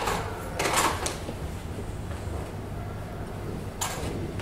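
A few brief rustling and knocking handling sounds from a hairdresser's tools and products, the loudest just under a second in and another near the end, over a steady low hum.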